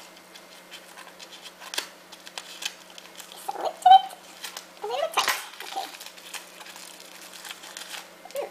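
A parcel's packaging being opened: irregular crinkling, rustling and small clicks. A child's voice makes two brief sounds midway.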